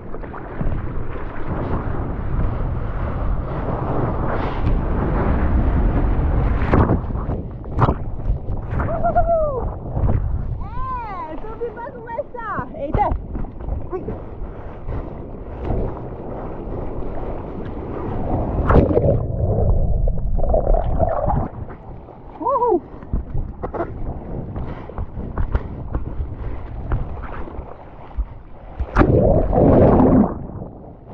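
Seawater rushing and splashing around a bodyboard and its board-mounted action camera as the rider paddles and then goes through breaking whitewater, with wind buffeting the microphone. A few brief squeals slide down in pitch in the middle. Near the end comes a loud surge of water as the camera is plunged under the wave.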